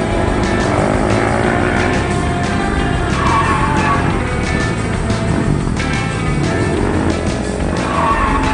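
A car driving fast with tyre squeal, under background music.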